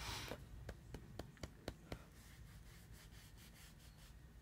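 Deck of tarot cards being shuffled by hand: a short rush of sliding cards, then a run of soft card clicks about four a second that fades out over the first two seconds, with fainter ticks after.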